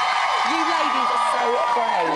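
Studio audience cheering and whooping, with long held high shouts over other voices, fading near the end.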